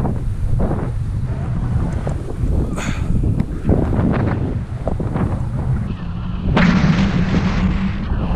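Heavy wind buffeting on a helmet-mounted camera's microphone during a fast downhill ski run, with irregular hiss and scrape from skis carving through the snow. About six and a half seconds in the sound turns brighter and louder.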